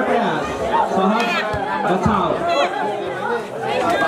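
Many overlapping voices of players and spectators calling out and chattering during a volleyball rally.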